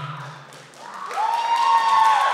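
The backing music's last low note fades out, and about a second in an audience breaks into applause, with a long held cheer rising over it.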